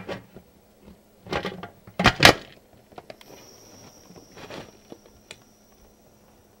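Metal pressure canner lid being turned and locked onto the pot: a short scrape, then sharp metal clunks about two seconds in, followed by a few light ticks.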